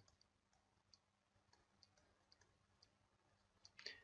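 Near silence with a faint steady hum, broken by a few faint light clicks, spaced unevenly, from a stylus tapping a tablet screen during handwriting.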